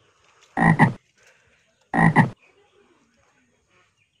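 Two loud animal calls a little over a second apart, each a short double-pulsed call with a pitched, low-reaching sound.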